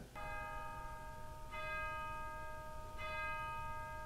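A bell struck three times, about a second and a half apart, each stroke ringing on until the next.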